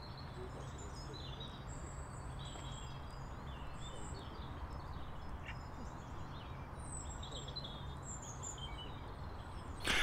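Quiet outdoor background picked up by a Rode VideoMicro camera-top microphone in a self-noise test: a faint even hiss over a low steady rumble, with small birds chirping now and then.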